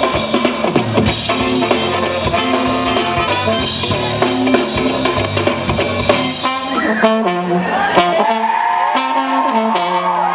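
A live funk band plays an instrumental with horns, drums and percussion in a steady groove. About seven seconds in, the bottom end drops away, leaving sparser stabs and higher parts.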